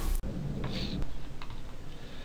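Soft irregular clicks and taps over a low background, after a hiss that cuts off suddenly just after the start.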